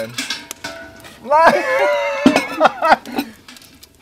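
Wordless human voice sounds. About a second in comes a long, wavering, pitched vocal sound, which then breaks into short, choppy vocal bits, with a few light clicks at the start.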